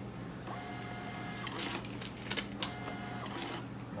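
Star receipt printer printing a customer's receipt: two stretches of steady motor whine about a second each, with a few sharp clicks between them.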